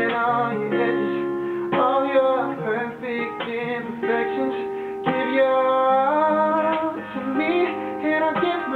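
Music: a man singing a slow ballad to a picked acoustic guitar.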